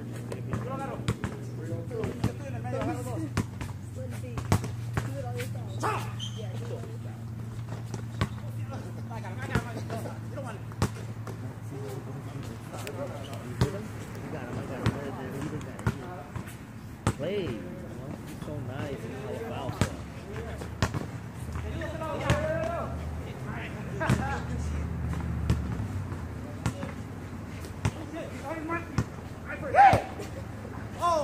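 Basketballs bouncing on an outdoor hard court in short, irregular sharp thuds, mixed with the distant shouts and chatter of players. A steady low hum runs underneath.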